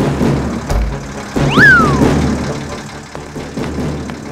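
Cartoon engine sound of a small delivery truck running, a steady low rumble under background music. About a second and a half in, a loud whistle-like sound swoops up in pitch and falls back down.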